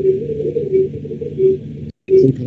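Garbled, muffled audio on a video-call line: a low steady drone with a blurred murmur, not clear speech, cutting out briefly near the end.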